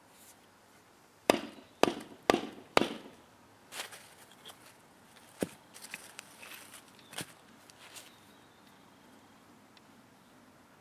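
Tungsten-tipped metal survival baton striking a stone slab four times in quick succession, about half a second apart, the slab breaking under the blows. Lighter knocks and clatter follow as the broken stone pieces are moved.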